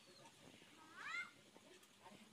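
One short animal call about a second in, rising and then falling in pitch, against near silence.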